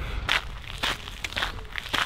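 Footsteps crunching on a fine gravel path, about two steps a second.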